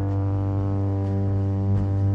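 Live rock trio holding one long, steady distorted electric guitar tone over a low held bass note, with the drums nearly silent.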